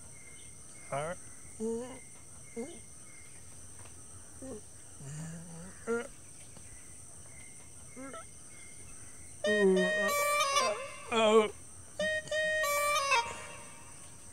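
Quiet rural background with scattered short bird calls, then about nine and a half seconds in a much louder wavering, pitched sound with a strong vibrato, lasting about four seconds in two or three stretches.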